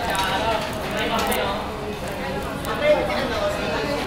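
Background chatter of several people talking in a restaurant, voices at conversational level, with a short click about three seconds in.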